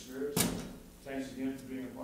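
A man speaking, broken by one sharp knock about half a second in, the loudest sound here.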